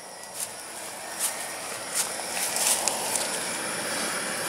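Leaves and stems of a tomato plant rustling as it is brushed and pushed through, with a few soft clicks.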